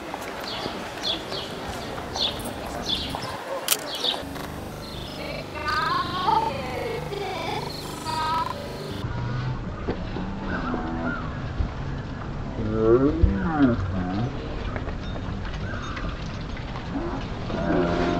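Street ambience with indistinct voices. Short high chirps repeat through the first few seconds, and the sound changes abruptly about nine seconds in, at an edit.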